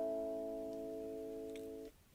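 Mudita Harmony alarm clock's speaker playing a bedtime tone: a soft plucked-string chord that rings on and slowly fades, then cuts off suddenly just before the end.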